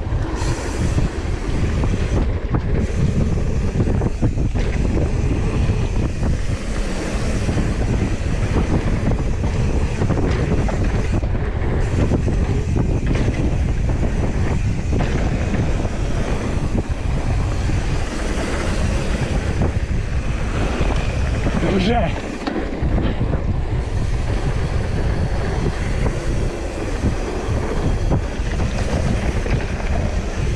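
Wind buffeting the microphone and the rumble and rattle of a mountain bike riding fast down a bike-park trail, loud and steady throughout. About two-thirds of the way through there is a short wavering tone.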